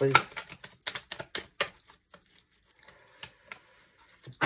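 A deck of tarot cards being shuffled by hand: a quick run of card clicks and slaps for about two seconds, then softer rustling with a few more clicks.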